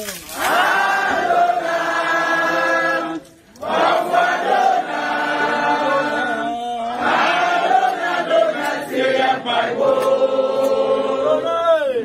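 A group of voices chanting together in long held phrases, with a short break about three and a half seconds in.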